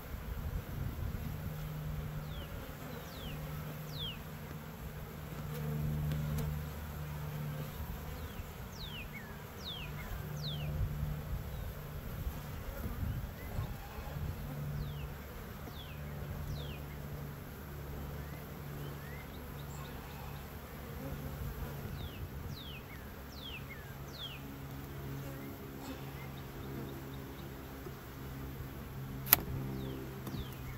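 Honeybees buzzing around an opened hive, a low hum that swells and fades, with short high falling chirps above it. Near the end there is one sharp click, the loudest sound.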